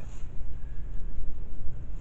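Wind buffeting the camera's microphone: an uneven low rumble that rises and falls in gusts.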